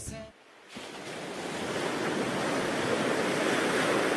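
Water and wind noise at the edge of a lake around an inflatable canoe in the shallows: a steady rushing hiss that comes in just under a second in and grows gradually louder.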